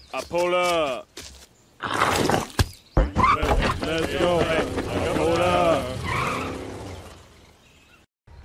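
A man's voice calls out briefly, then a jumble of shouted voice sounds mixed with noisy car-like sound effects from the cartoon car meme, fading out toward the end.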